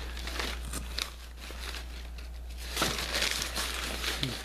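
Brown kraft paper wrapping crinkling and rustling as it is unfolded by hand. The crackle eases off in the middle and picks up again near the end.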